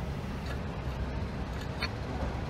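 Steady low background rumble, with one faint click near the end.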